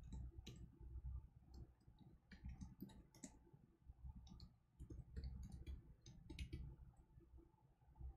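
Faint computer keyboard typing: key clicks in irregular runs with short pauses between them.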